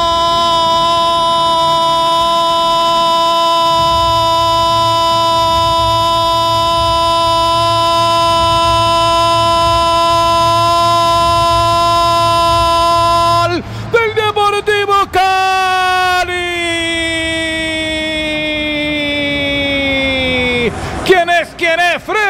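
Football radio commentator's long goal cry, a single shouted "gol" held at one high pitch for about fourteen seconds, for Cali's second goal. A few broken shouts follow, then a second long held cry that slowly falls in pitch and ends about a second before more words.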